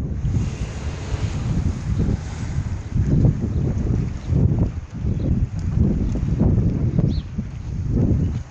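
Wind buffeting a phone's microphone: a low, uneven rumble that swells and drops in gusts.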